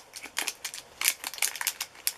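A small plastic bag of diamond-painting drills being handled in the fingers: a run of irregular crinkles and clicks.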